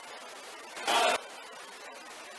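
Faint steady hiss of room noise, broken by one short burst of noise about a second in.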